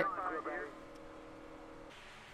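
A voice trailing off in the first half second, then the faint, even drone of a NASCAR stock car's V8 engine at speed, heard through in-car onboard footage.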